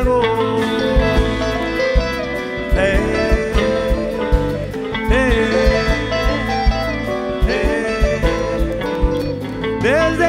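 Live folk-rock band playing an instrumental break of a chacarera, with electric guitar lines that slide in pitch over a six-string electric bass and drums.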